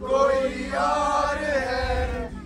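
A group of young voices singing together on a moving bus, holding long notes in phrases, over the low rumble of the bus.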